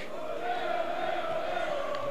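A small group of home football supporters singing a chant in the stadium stands.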